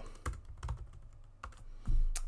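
Computer keyboard typing: a handful of separate, irregularly spaced keystrokes as a terminal command is finished and entered.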